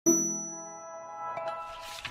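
Intro sound effect: a bell-like ding struck right at the start, ringing on in several steady tones and slowly fading, with a faint tap about one and a half seconds in.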